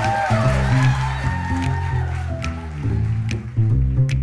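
Outro music: a bass line stepping through short low notes with lighter instrument notes above it.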